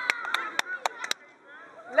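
One person's hand claps, a quick run of sharp claps about four a second that stops after about a second.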